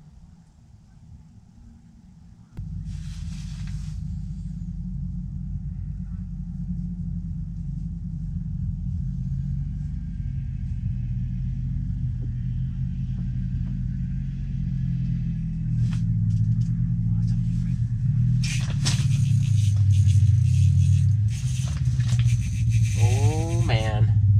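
A motor running close by: a low, steady drone that starts abruptly about two and a half seconds in and keeps growing louder, its pitch shifting a little. Clatter and rattling join it near the end.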